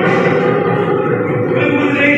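Live Assamese Bihu folk music from the stage: dhol drums, with held notes sounding over them.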